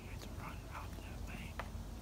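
A person whispering softly in short bursts over a steady low rumble, with one sharp click about three-quarters of the way through.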